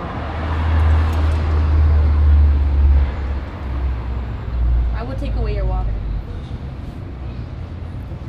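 Street traffic beside the patio: a passing vehicle's low rumble swells to its loudest about two to three seconds in, then fades. A brief voice sounds near five seconds.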